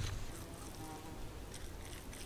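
A short click, then an insect buzzing faintly in passing for under a second over quiet outdoor background.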